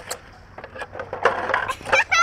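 Irregular plastic clicks and knocks from a child's small plastic ride-on toy on brick paving, growing louder and busier in the second half.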